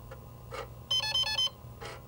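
Apple II computer beeping a quick run of about half a dozen electronic notes, alternating in pitch over about half a second, starting about a second in, over a low steady hum.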